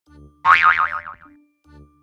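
Intro jingle with a cartoon boing sound effect: a loud, wobbling twang about half a second in that dies away over most of a second, between short low musical notes.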